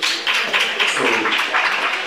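Applause: several people clapping their hands in a dense, irregular patter.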